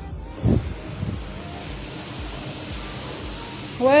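Steady hiss of outdoor urban street ambience heard from a balcony above a street, with a low thump about half a second in.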